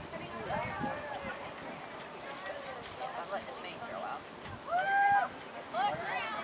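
Pony's hooves beating on the soft dirt of the arena as it canters toward a barrel, with voices around it and one loud, held call about five seconds in.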